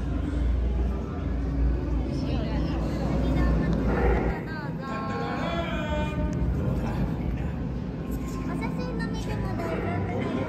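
Indistinct voices over background music, with a low rumble in the first four seconds that then drops away.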